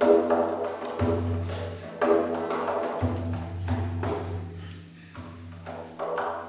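Medieval estampie played on bowed lyre and lute over a steady shruti box drone, with percussion strokes about once a second.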